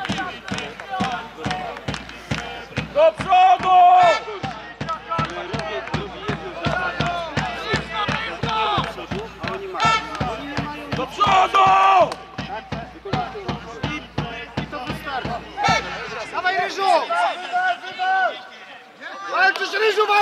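Group of football supporters chanting together over a steady, regular drum beat. The drum stops about sixteen seconds in and the chanting carries on.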